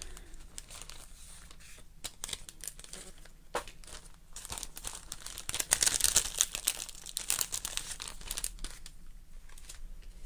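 Paper and card crinkling and rustling in the hands, with small crackles and tearing sounds, as die-cut pieces are pulled free of their sheet. It is busiest in the second half.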